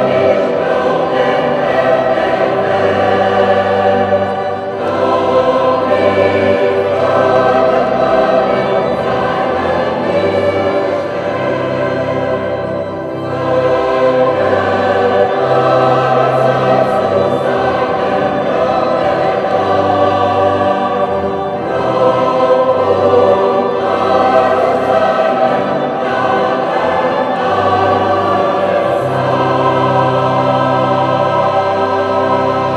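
Large mixed choir of men's and women's voices singing together in sustained phrases, with short breaks in the phrasing about four seconds in and again near the middle.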